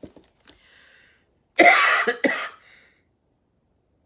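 A woman coughing: a faint breath, then a harsh cough about a second and a half in, in two quick bursts.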